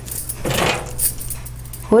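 Besan flour tipped from a steel measuring cup into a stainless steel bowl: a soft rushing pour about half a second in, with light metallic clinks of cup against bowl.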